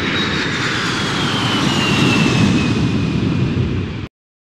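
Aircraft engine flyby sound effect: a steady engine noise with a whine that falls slowly in pitch as it passes.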